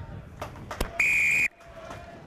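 Rugby referee's whistle: one steady, shrill blast of about half a second, a second in, cut off abruptly. Just before it comes a sharp knock.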